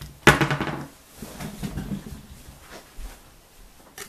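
A small revolver is set down on a hard tabletop: one sharp knock about a third of a second in, followed by softer handling sounds.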